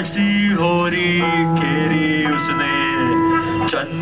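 A live rock band playing the opening of a metal song, electric guitars ringing out in long held chords.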